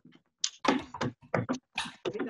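Hands beating on a tabletop for a drum roll: a quick, uneven string of about seven knocks starting about half a second in.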